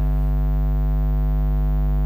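Steady electrical mains hum in the recording: an unchanging low buzz with many evenly spaced overtones, fairly loud.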